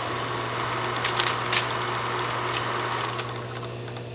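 Old film projector sound effect: a steady mechanical running whir with a low hum and a few clicks, fading a little near the end.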